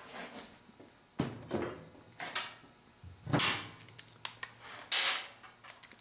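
Hand-handled plastic and metal engine parts and tools being moved and set down: a string of about eight irregular knocks, clunks and short scraping clatters.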